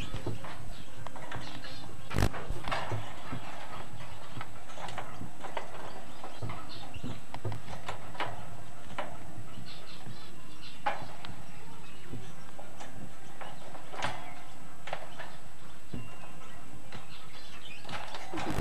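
A rainbow lorikeet moving about its cage and pecking at its feed bowl, making irregular light clicks and knocks, the loudest about two seconds in, over a steady hiss.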